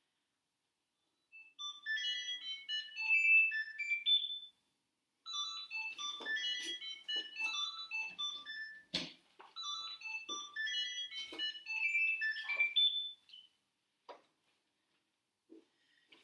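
A mobile phone ringtone: a short electronic melody played three times over, with a knock about nine seconds in, cut off before the third phrase has quite finished.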